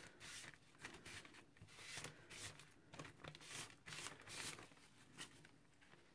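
Faint rustling and rubbing of a paper tissue wiped across a card tag in a series of short strokes, taking off excess ink spray; the strokes thin out toward the end.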